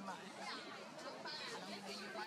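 An indistinct babble of voices with a few short high chirps over a faint steady hum.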